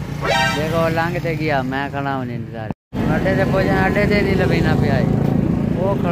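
A man talking over steady road traffic, with motorcycle and vehicle engines running in the background. There is a brief break in the sound about three seconds in.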